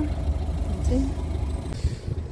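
Low, uneven rumble of wind buffeting a phone microphone outdoors, with a brief spoken word about a second in.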